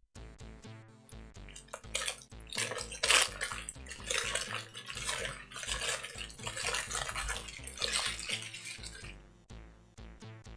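Paper burger wrapper being crumpled and rustled by hand close to the microphone, in irregular crinkling bursts that die away near the end.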